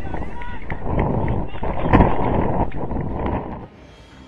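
Wind buffeting the microphone at the side of an outdoor soccer pitch, with players' and spectators' voices shouting. It cuts off abruptly shortly before the end.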